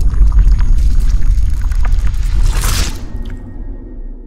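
Sound-design transition sting: a loud, deep rumbling boom that slowly fades, with scattered crackles and a bright whoosh swelling and dying away about two and a half seconds in.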